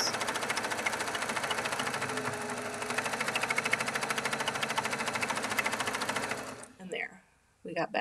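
Baby Lock Accomplish 2 sewing machine running fast during free-motion quilting, a rapid, even stitch rhythm from the needle. It stops a little before the end.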